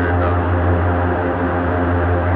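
Live electronic music: a steady, sustained low drone with layered held tones over it and no beat.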